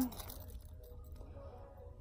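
Quiet room tone: a low steady hum with a few faint handling rustles early on, as a leather key holder is turned in the hands.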